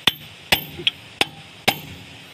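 Hand hammer striking a steel chisel, metal on metal: four sharp blows about half a second apart with a lighter tap between, some leaving a brief high ring. The chisel is cutting a worn boom pin bushing out of its bore on a JCB 3DX Super backhoe.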